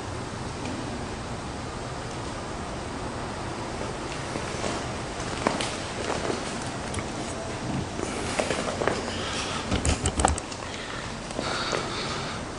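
Steady background hiss with scissors snipping hair now and then: scattered sharp clicks begin about halfway through and bunch together near the end, along with a few dull knocks.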